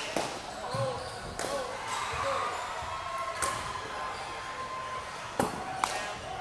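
A baseball bat striking pitched balls in a batting cage: three sharp cracks about two seconds apart, the last near the end.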